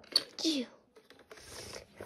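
A sharp click just after the start as a die-cast toy car is handled on a plastic toy track, a short falling syllable of a boy's voice, then a faint scraping near the end as the car is moved along the plastic.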